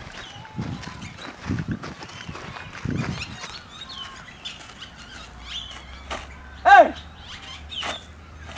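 Small birds chirping, with a few low thumps in the first three seconds and one short, loud, pitched call that rises and falls about two-thirds of the way through.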